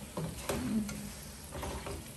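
Sliced onions and whole spices frying in oil in a pan, sizzling as a silicone spatula stirs and scrapes through them.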